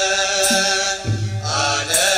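Ethiopian Orthodox church chant (mahlet): voices singing held, drawn-out notes, with a brief dip in the line about halfway through.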